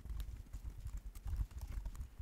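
Typing on a computer keyboard: a fast, uneven run of soft key clicks and thuds.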